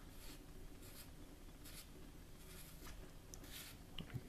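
Faint, scratchy rubbing of fingers turning the threaded battery cap on an electronic rifle scope's illuminator turret as it is unscrewed to reach the battery, in several short scrapes.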